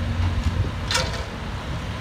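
Construction machinery engines running in a steady low rumble, with one short sharp noise about a second in.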